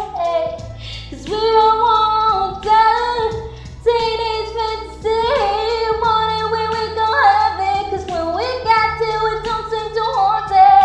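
A young woman singing solo, with long held notes and sliding vocal runs. Low sustained notes sit beneath the voice and change every second or two.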